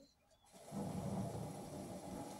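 Heavy rain from a film soundtrack played through a television, setting in about half a second in as a steady hiss with a low rumble beneath it.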